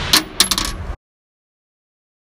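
Logo sound effect: the ringing tail of a loud shot-like boom, with several sharp clicks over it. It cuts off abruptly about a second in, leaving silence.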